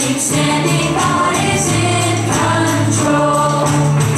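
A children's worship song: group singing over music with a steady beat.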